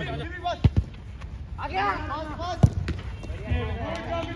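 A football being kicked on an artificial-turf pitch: two sharp thuds close together about two-thirds of a second in, the loudest a little after two and a half seconds, and a softer one near the end, amid men's shouting voices.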